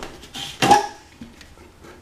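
A short cough from the person holding the camera. Faint light clicks follow as the mirrored medicine cabinet door is pulled open.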